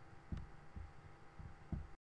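Four faint, dull low thuds at irregular intervals over a steady faint hum.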